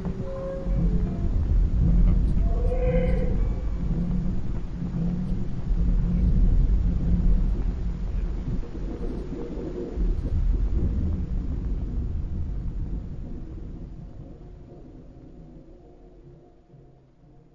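Deep rumbling drone of ambient sound design, swelling and ebbing, with a brief higher tone about three seconds in; it fades away over the last few seconds.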